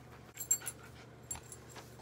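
A few faint clicks with brief, light metallic jingling over quiet room tone.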